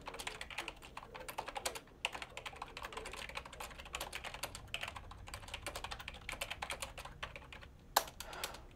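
Rapid typing on a computer keyboard: quick runs of key clicks with a brief pause about two seconds in.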